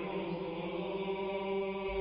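Background music of choral chant holding one steady chord.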